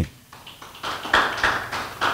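A congregation clapping in applause: a patter of many hands that starts about half a second in, swells, then thins out near the end.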